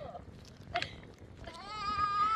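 A child crying: one long, drawn-out, high cry that begins about three-quarters of the way in.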